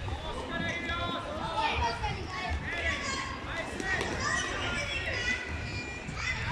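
Several children's voices shouting and calling out over one another, high-pitched and overlapping, with no clear words.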